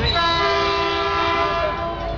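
Air horn of the approaching Metrolink Holiday Toy Express locomotive sounding one long blast, a chord of several steady tones lasting nearly two seconds.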